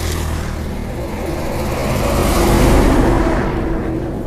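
A motor vehicle passing by, its engine and road noise swelling to a peak about three seconds in and then fading.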